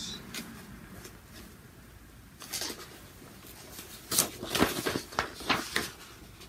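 Rustling of paper while someone searches for a paper pattern sheet: a brief rustle about two seconds in, then a busier run of rustles and light knocks near the end.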